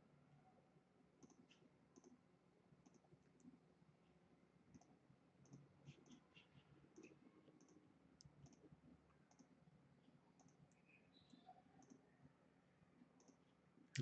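Faint computer mouse button clicks, irregular and about one or two a second, over near-silent room tone, as digitizing points are placed one by one.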